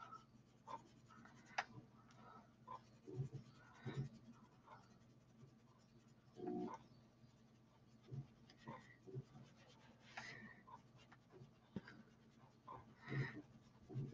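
Faint, intermittent scuffs of a sponge applicator rubbing pastel onto smooth paper.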